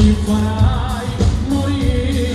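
Live pop band playing with a male singer singing into a microphone over electric guitars, keyboards and a drum kit.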